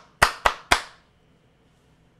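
A man clapping his hands three times in quick succession, about four claps a second, in the first second.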